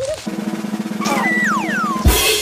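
Cartoon music cue: a rapid drum roll that grows slightly louder, with sliding whistle tones falling in pitch over it in the second half.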